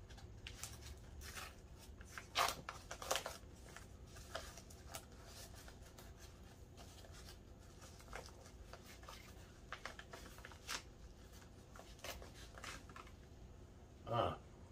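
Packing wrap rustling and crinkling as a small item is unwrapped by hand, in scattered short crackles with two louder bursts about two and three seconds in.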